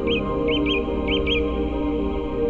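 A bird calling over soft ambient music with long held tones: three pairs of short, high chirps about half a second apart, in the first second and a half.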